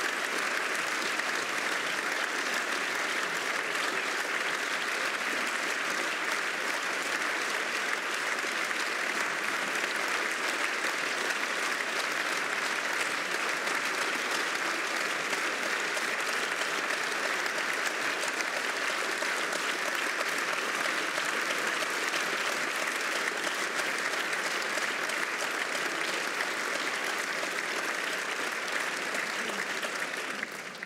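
Large audience clapping in a long standing ovation: dense, steady applause at an even level throughout.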